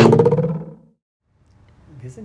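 Short edited-in transition sound effect: a burst of hiss, then a low pitched, pulsing tone that fades out within about a second.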